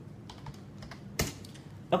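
Typing on a computer keyboard: a few scattered keystrokes, with one louder key strike a little past halfway.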